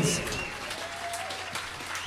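Audience applauding, with a low steady hum underneath.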